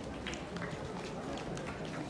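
Footsteps of many people walking on a hard paved concourse: irregular light steps over a steady murmur of indistinct crowd voices.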